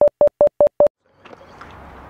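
Five short electronic beeps at one pitch, in quick succession at about five a second, stopping about a second in; this is an edited sound effect over the title card. Faint background noise follows.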